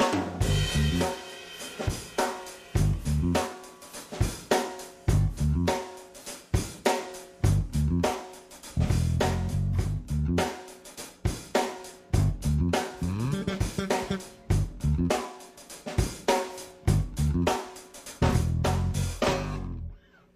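A live hip-hop groove: a drum kit playing a steady beat with kick, snare and hi-hat, and an electric bass playing a sparse, laid-back line in G on just a few notes (G, D and F), with a little fill between them.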